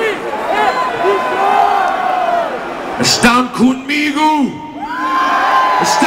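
Large stadium concert crowd cheering and whooping, with fans close to the microphone yelling over it. A louder burst of shouting comes about three seconds in.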